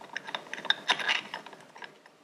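Irregular metallic clicking and rattling from a steel motorcycle roller chain and a chain splitter/riveter tool being handled and fitted onto the links, densest around the middle and thinning near the end.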